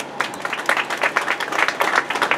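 Applause from a small group of people: many overlapping hand claps.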